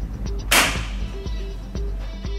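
A single sharp clack about half a second in as the metal-rimmed Wi-Fi array is handled and set down on a table, over background music with a steady beat.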